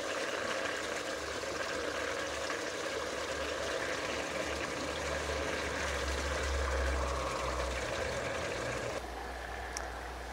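Water of a small garden stream running and trickling over stones, a steady, even flow.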